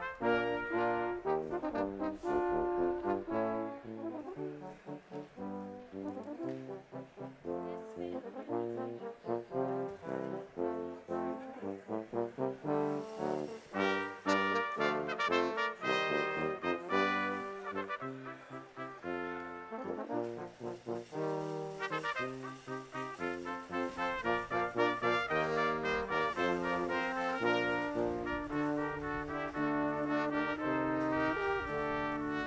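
Brass ensemble playing recessional music, a continuous run of sustained chords and moving melodic notes.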